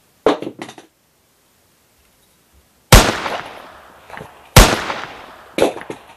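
Two loud revolver gunshots about a second and a half apart, each cracking suddenly and fading away in a long tail.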